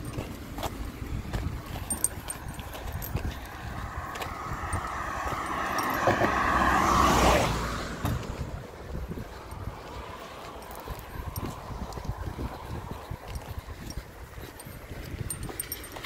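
A car passes on the road, its tyre and engine noise building over a few seconds to a peak about seven seconds in, then falling away quickly. Footsteps on paving run underneath.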